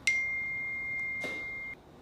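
A steady high-pitched electronic beep, one held tone lasting a little under two seconds, that cuts off suddenly.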